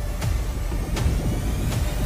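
A low, steady rumble with a few faint clicks through it.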